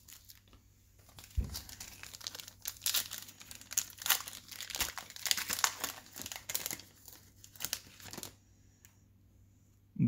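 The foil wrapper of a 2020 Topps Fire baseball card pack being torn open and crinkled by hand: a run of crackles lasting about seven seconds, starting with a soft bump about a second in and stopping near the end.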